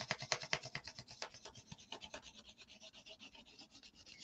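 Faint, quick scratching strokes on a paper plate, several a second, fading away over the first couple of seconds.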